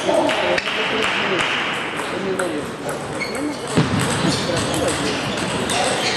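Table tennis balls clicking off rackets and bouncing on tables at uneven intervals, the sharpest click about four seconds in, with voices talking in the background.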